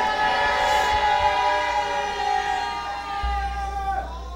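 A sustained chord on a keyboard instrument, held and slowly fading, with a low hum coming in about three seconds in.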